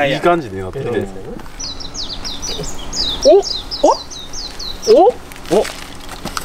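A small songbird sings a run of about a dozen quick, high, down-slurred notes over about four seconds. Three short, loud upward-sliding sounds cut across it about halfway through and again near the end.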